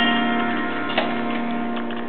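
Clean electric guitar (a 1979 Fender Stratocaster through a Mesa Boogie Lone Star Special's clean channel): notes ring on and slowly fade, with one freshly picked note about a second in.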